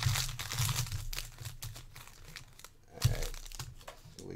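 Foil trading-card pack torn open and crinkled by hand: a quick run of crackles that thins out after about two and a half seconds. A single sharp tap about three seconds in.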